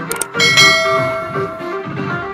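Dance music playing, with a subscribe-reminder sound effect laid over it: two quick mouse clicks, then a bright bell chime that rings out and fades over about a second.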